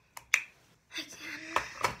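Lipstick tube being handled: a couple of sharp plastic-metal clicks in the first half-second, the louder about a third of a second in. A brief hum of voice and the word "can" follow near the end.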